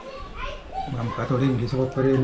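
Speech only: quiet talk from people sitting together, not caught by the transcript, with a man's voice becoming clearer about halfway through.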